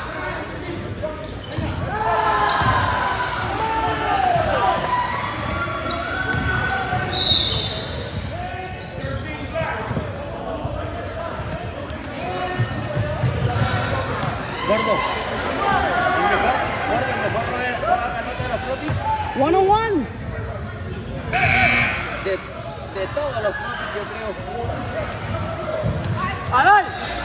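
Basketball game in a large, echoing gym: a ball dribbling and bouncing on the hardwood court, sneakers squeaking in quick short glides, and players, coaches and spectators calling out. A brief high whistle sounds about seven seconds in.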